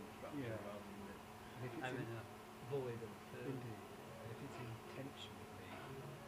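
Stepper motors of a Vector 3 3D printer buzzing in short tones that glide up and down in pitch as the axes move back and forth during a print, over a steady low hum.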